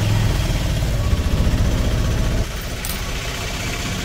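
Auto-rickshaw engine running with a steady low beat, heard from inside the open passenger cabin. About two and a half seconds in, the sound drops a little and has less low rumble.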